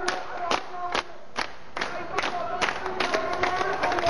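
Crowd of demonstrators clapping in a steady rhythm, about two to three claps a second, while their chanting voices carry on underneath.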